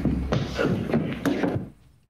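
A scuffle between two men grappling: a quick run of bumps and knocks over a low steady hum, fading out about a second and a half in.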